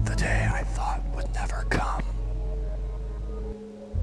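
Whispered voice-over over a low, steady droning soundtrack; the drone drops out shortly before the end.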